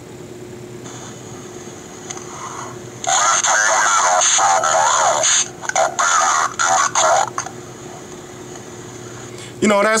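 A man's recorded voice played back slowed down through a Samsung phone's small speaker by the Ultra Voice Changer app's Slow Motion effect, saying "Leave the money outside my house, I'll be there at eight o'clock". The playback sounds thin and tinny with no bass; a faint hiss comes in about a second in, and the voice runs from about three seconds in to past seven seconds.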